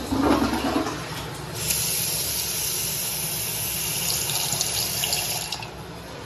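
Toilet flushing: a loud rush of water in the first second, then a steady hiss of running water for about four seconds that stops shortly before the end.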